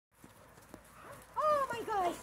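A dog giving a quick run of short, high-pitched excited calls, each bending up and then falling in pitch, in the last half second or so. There is a single faint knock before them.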